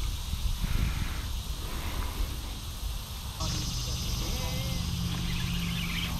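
Outdoor ambience by the water: a steady low rumble, joined a little past halfway by a steady engine hum that starts abruptly.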